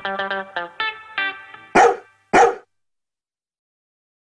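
Plucked-guitar music fades out over the first second and a half, followed by two loud, short barks from a small dog about half a second apart.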